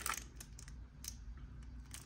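Light clicks and taps of a clear plastic packaging insert being handled in a cardboard box, the loudest right at the start and a few fainter ones after.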